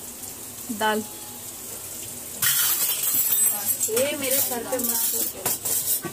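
Hot oil sizzling as potato cheese balls deep-fry in a pan, starting suddenly a little before halfway through and running steadily, with voices over it.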